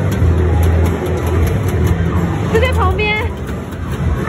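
Busy game-arcade din: a loud steady low hum with faint clicks and background chatter. A brief pitched tone bends up and down about two and a half seconds in.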